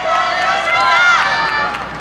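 Group of voices shouting together in unison, with drawn-out calls that rise and fall in pitch, fading out about a second and a half in.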